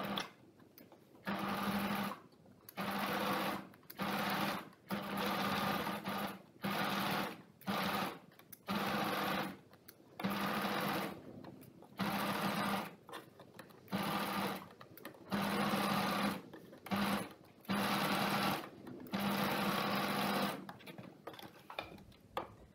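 Pfaff electric sewing machine stitching a seam in about a dozen short runs, stopping and starting every second or two as the fabric is guided along.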